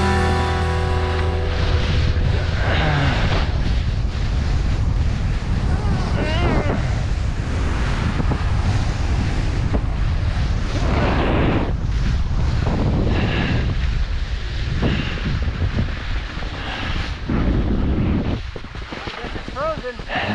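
Wind buffeting an action camera's microphone and skis scraping over firm spring snow on a fast run, with a few brief snatches of voice.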